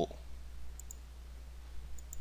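A couple of faint computer mouse clicks, about a second apart, over a steady low hum.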